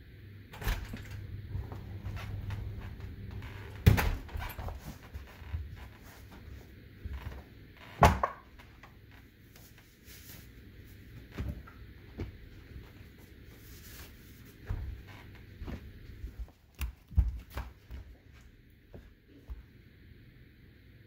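Scattered knocks and thumps from a person moving about close to the microphone in a small room, two of them much louder about four and eight seconds in, with smaller knocks near the end.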